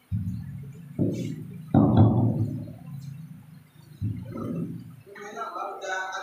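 Microphone handling noise: a handheld microphone being taken and brought up to the mouth gives several sudden low thumps and rumbles, the loudest about two seconds in. A voice starts on the microphone near the end.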